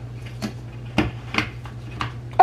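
Small hard plastic clicks and knocks, three sharp ones, as the hair-shaped top of an Angry Mama microwave steam cleaner is twisted on and keeps spinning before it catches. A steady low hum runs underneath.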